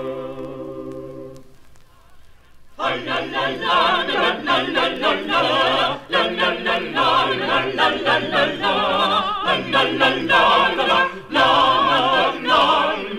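Vocal music: a choir of voices singing, apparently a cappella. A held chord fades away in the first two seconds, and after a short pause the voices come back in with quick, moving lines sung with vibrato.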